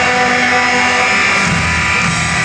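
Loud distorted electric guitar holding a sustained, ringing chord as a steady, even drone.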